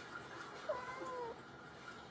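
A domestic cat giving one short, faint meow, a little under a second in.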